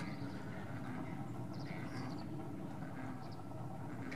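Faint, steady outdoor background with a few short, high bird chirps, about one and a half seconds in and again near three seconds in.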